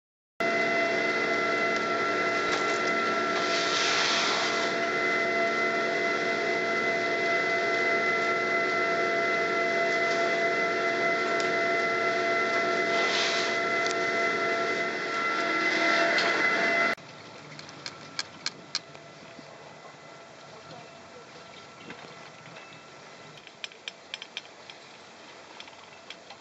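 The machinery of a 1983 double chairlift running in its station: a steady hum and whine made of several fixed tones, with two hissing swells. About two-thirds of the way in it cuts off suddenly to a much quieter steady hiss with scattered clicks and rattles, heard while riding on the chair.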